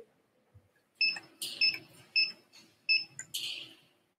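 A high-pitched ding repeated four times, a little over half a second apart, over faint shuffling, followed by a brief rustle near the end.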